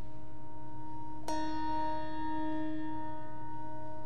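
A bell struck once about a second in, a clear metallic ring with many overtones that dies away over a couple of seconds, over the lingering hum of an earlier stroke.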